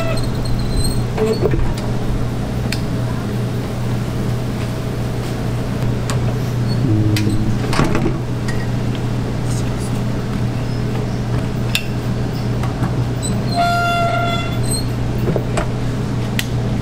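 Steady low machine hum of a small shop kitchen's equipment, with scattered light clicks and clatter of work at the waffle irons. A short electronic beep sounds about fourteen seconds in.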